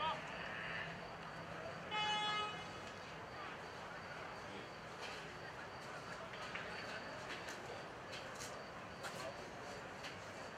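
Distant voices of football players calling across an open pitch, with one brief, steady, pitched call or tone about two seconds in, the loudest sound.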